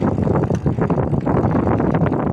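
Wind buffeting the microphone of a rider on a bicycle, a loud, rough, fluctuating rumble mixed with tyre noise on a paved path.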